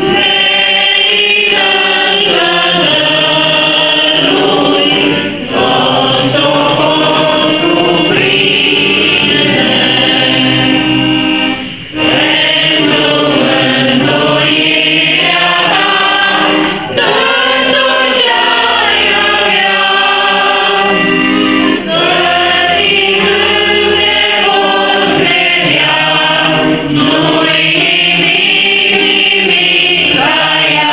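A small mixed group of men and women singing a hymn together in phrases, with short breaks between phrases.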